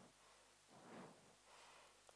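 Near silence: room tone, with one faint, brief noise about a second in.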